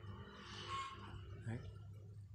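Quiet outdoor background with a faint rustle early on, and a man saying one short word about one and a half seconds in.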